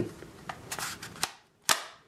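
Kydex holster and a plastic training pistol clicking as the gun is worked in and out of the holster's retention: a few light clicks, then one sharp snap near the end.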